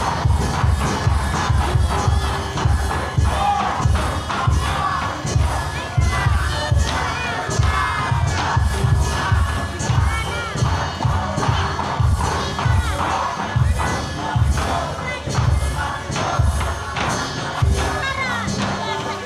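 Crowd cheering and shouting over a quick, steady drumbeat as an acrobat tumbles on stage.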